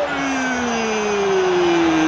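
A football commentator's drawn-out goal call: one long held shout that slides steadily down in pitch, the end of a string of repeated "goal!" cries, over steady crowd noise.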